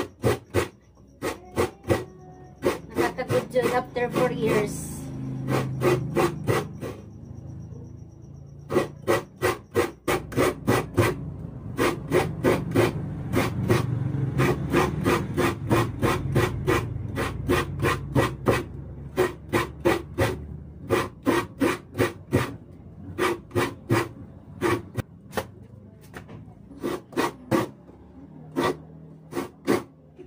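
Fresh coconut meat being grated by hand into a plastic basin: a rhythmic rasping scrape, a few strokes a second, with a short pause partway through.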